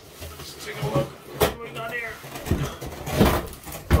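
Long cardboard guitar box scraping and rubbing as it is slid and lifted out of an outer shipping carton, with a squeak of cardboard on cardboard about two seconds in. There is a sharp knock about one and a half seconds in and a heavy thump near the end as the box comes free.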